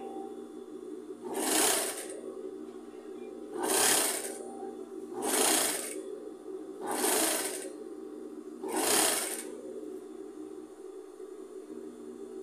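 Industrial straight-stitch sewing machine run in five short bursts, each under a second, stitching pleated fabric strips onto a rug backing, with brief pauses between runs while the pleats are folded. A steady low hum runs underneath.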